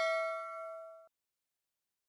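A bell-like ding sound effect ringing out and fading, cut off suddenly about a second in, then silence.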